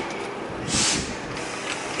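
Compressed air hissing out of a standing passenger train's brakes or pneumatic system: a short, loud hiss about halfway through, over a low rumble and a softer background hiss.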